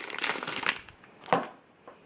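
Plastic shrink wrap crinkling as it is pulled off a small box of trading cards, ending after under a second, followed by a single sharp click a little over a second in.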